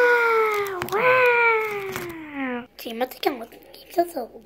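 A voice giving two long, drawn-out calls, each falling in pitch over nearly two seconds, followed by short spoken sounds near the end.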